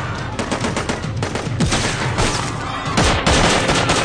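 Sustained rapid automatic gunfire, shots following one another many to the second without a break, with a louder cluster about three seconds in.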